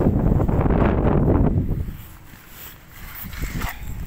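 Wind buffeting the phone's microphone as a loud, low rumble for the first two seconds, then dying down.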